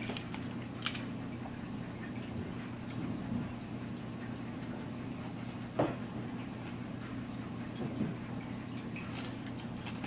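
Quiet handling of fabric, ribbon and a metal seam gauge on a cutting mat while a ribbon tie is positioned and pinned, with a few small clicks over a steady low hum.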